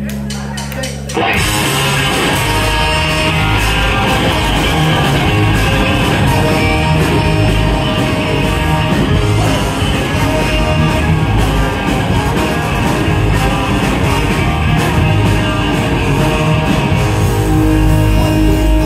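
Ska punk band playing live: electric guitar, bass, drums and a horn section of trumpet and trombone. A held note gives way to the full band coming in about a second in, loud and steady from then on.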